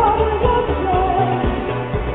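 A live synth-pop band performance: a male lead vocal sings a wavering melody over a steady bass line and a regular drum beat. The recording is dull and muffled, with no treble.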